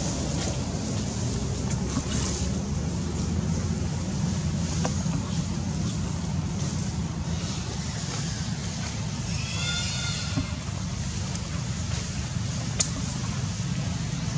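Steady low rumbling background noise, with a brief high-pitched call about ten seconds in and a couple of faint clicks.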